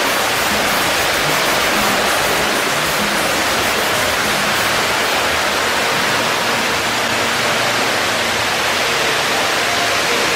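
A steady rushing noise like flowing water, with faint music underneath.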